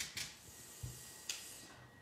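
Light handling noises of a paper card being pressed and adjusted on a tabletop: a few brief rustles and a soft tap a little under a second in.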